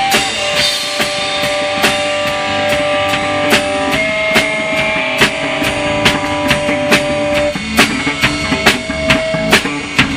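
Rock band demo recording in an instrumental passage with no vocals: electric guitar holding long sustained notes over a drum kit keeping a steady beat.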